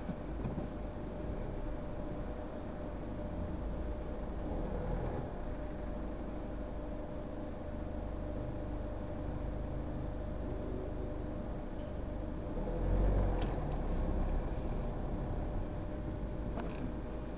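Car cabin noise from inside a taxi moving slowly in queued traffic: a steady low engine and road rumble. The rumble swells briefly about thirteen seconds in, with a few faint ticks just after.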